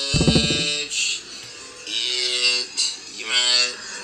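A phone ringtone playing a personalized novelty song: a voice sings held notes in short phrases over music.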